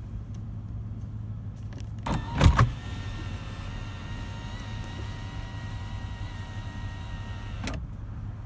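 Power sunroof of a 2000 Toyota 4Runner opening: a couple of knocks, then its electric motor runs steadily for about five seconds and cuts off near the end. A steady low drone sits underneath throughout.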